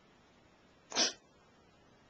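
A single short, breathy burst from a person's mouth about a second in: a mouthed gunshot sound made along with a finger gun.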